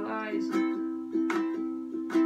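Ukulele strummed in chords, a few strokes in two seconds, under one long held sung note.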